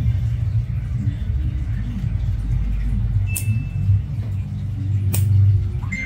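A steady low rumble, with a few sharp clicks about three and five seconds in.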